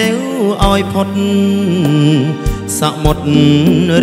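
A man singing a Khmer orkes song into a microphone, backed by a live band of keyboard, electric guitars and drum kit, with drum hits through the passage.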